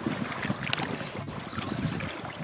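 Water sloshing and splashing in irregular small strokes around a swimming hippopotamus as it nudges a floating object through the pool with its snout, with some wind noise on the microphone.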